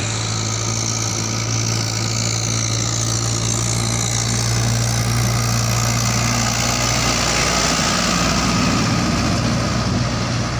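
Mahindra 575 DI tractor's diesel engine running steadily as it pulls a trailer fully loaded with sugarcane, growing louder as it draws near and passes close by toward the end.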